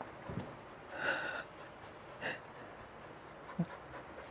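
Faint, scattered sounds of dogs moving and breathing as they settle into a down: a soft thud just after the start, a short breathy noise about a second in, and a small knock near the end.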